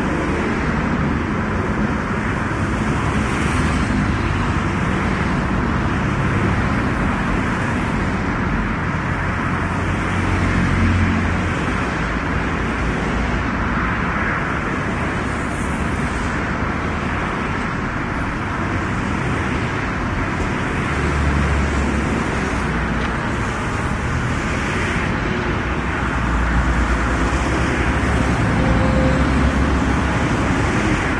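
Steady roar of motorway traffic, the tyre and engine noise of cars passing at speed, with a deeper rumble swelling up several times as vehicles go by.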